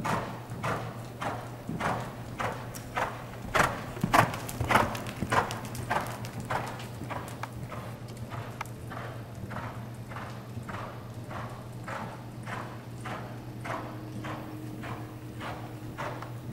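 Hoofbeats of a Paint mare trotting on indoor arena dirt footing: an even beat of about two to three footfalls a second. They are loudest around four to five seconds in and grow fainter in the second half as she moves away. A steady low hum runs underneath.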